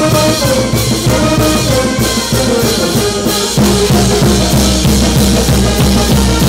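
Brass band playing live: brass horns and saxophones carry the tune over a steady drum beat with sousaphones and bass drum. The bass grows fuller a little past halfway.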